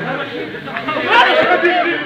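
Several people talking and shouting over one another, getting louder about a second in.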